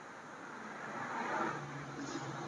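A vehicle passing on a road: a soft swell of road noise that rises to a peak about a second and a half in, then fades, with a faint low hum underneath.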